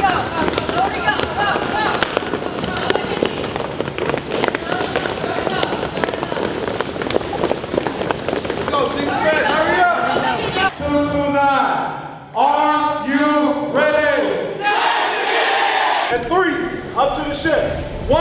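A group of people shouting over one another in a dense, noisy din; from about nine seconds in, loud separate shouted calls stand out.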